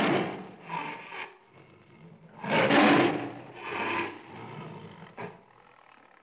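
Tiger growling and roaring in a series of rough bursts, the loudest about three seconds in.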